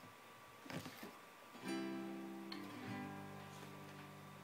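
Classical guitar: after a short quiet pause, a chord is played about halfway through and left ringing. The bass note moves to a lower one about a second later and rings on.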